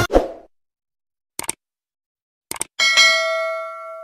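Subscribe-button animation sound effects: the intro music ends abruptly at the start, then a short click about a second and a half in and a quick double click about a second later. A bell ding follows at once, ringing and slowly fading.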